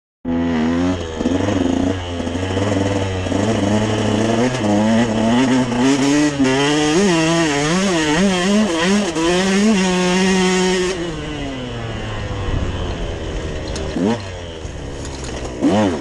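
Dirt bike engine being ridden hard, its pitch rising and falling as the throttle is worked over the bumps. About eleven seconds in it settles to a steadier, lower note, then revs up again near the end.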